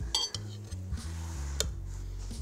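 A fork clinking and scraping against a bowl as pasta is scooped up: a ringing clink near the start and another sharp one just past halfway.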